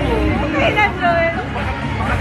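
Close voices talking over the steady babble of a crowd.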